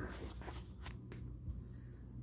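Quiet room tone with a low steady hum and a few faint clicks.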